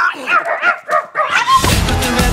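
A dog barking in a fast run of short yaps, about five a second. Music with a strong beat comes in near the end.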